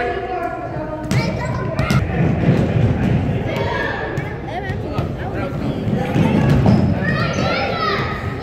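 Basketballs bouncing on a hardwood gym floor, irregular thuds, with voices in the background.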